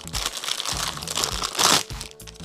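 Clear plastic bag crinkling as it is handled and pulled off a cup-shaped resin mould, with a louder crinkle near the end.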